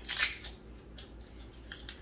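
Plastic wrapper of a Reese's Peanut Butter Cup package crinkling and tearing as it is pulled open by hand. There is a sharp rustle at the start, then softer crinkles.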